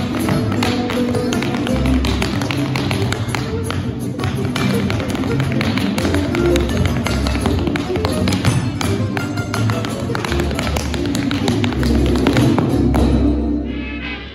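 Tap shoes striking a hard floor in quick rhythmic footwork over recorded music.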